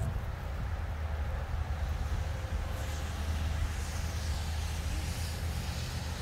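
Wind buffeting the microphone as a steady low rumble, with a soft, higher rustling hiss swelling about halfway through.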